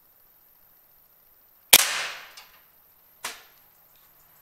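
A single shot from a PCP air rifle: one sharp crack about two seconds in that rings away over about half a second. A second, quieter sharp crack follows about a second and a half later.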